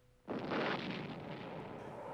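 A missile's rocket engine igniting at launch: a rushing roar starts abruptly about a quarter second in and holds steady, easing slightly.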